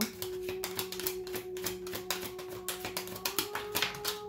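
A tarot deck being shuffled by hand: a rapid, irregular run of card clicks and snaps, over the steady held tones of background music.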